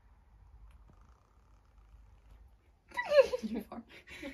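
Near-quiet room for about three seconds, then a person's high-pitched laugh that swoops down in pitch, followed by shorter bursts of laughter.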